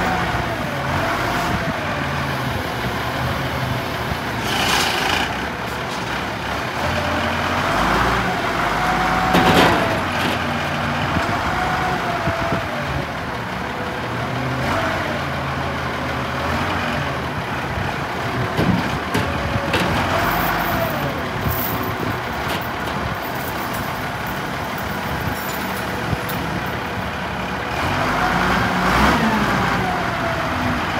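Case W200 wheel loader's six-cylinder diesel engine running while the loader arms and bucket are worked, with a whine that rises and falls repeatedly as the hydraulics are operated. A brief louder noise comes about ten seconds in.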